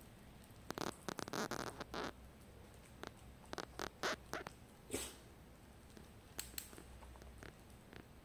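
A puppy licking and nibbling at a small piece of sweet potato on a tile floor: clusters of short wet smacks and clicks, densest about a second in and again around three to four seconds in, with a few single ones later.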